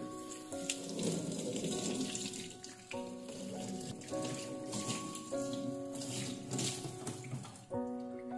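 Tap water running and splashing onto a cutting board in a stainless steel sink as a hand rubs it clean, stopping near the end. Background music plays throughout.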